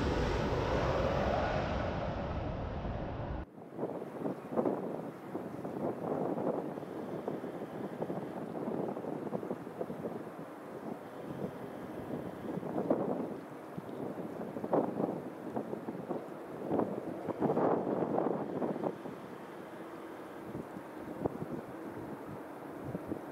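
Intro music fading out, then, after a sudden cut about three and a half seconds in, repeated gusts of wind buffeting the microphone. Under the gusts is the faint steady sound of the jet engines of an Airbus A300-600 freighter approaching to land.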